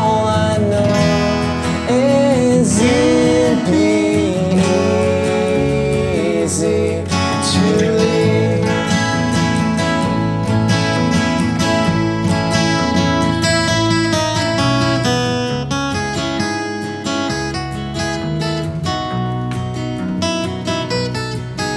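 Instrumental guitar passage: an acoustic guitar strums chords under an electric guitar's melodic lead, whose notes bend up and down over the first several seconds before settling into steadier picked lines.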